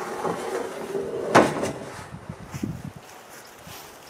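Handling noise from a sheet of corrugated metal roofing against a plastic wheelbarrow tub, with one sudden loud clatter about a second and a half in, then quieter rustling.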